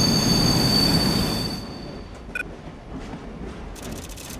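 Train running past with a rumble and a steady high squeal of wheels on rail, fading out after about a second and a half. Then a short beep, and a run of quick clicks near the end.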